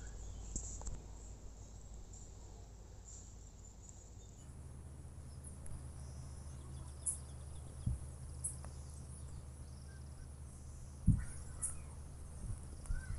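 Quiet outdoor ambience: a steady low rumble with a few faint high chirps, and a couple of soft thumps, the louder one about eleven seconds in.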